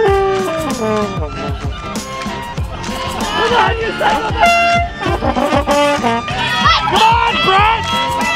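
A plastic trombone holds a note and then slides down in pitch over the first second, followed by spectators shouting and whooping.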